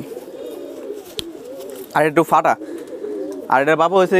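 Domestic pigeons cooing in a low, wavering drone, with a man's voice speaking in two short stretches, about two seconds in and near the end.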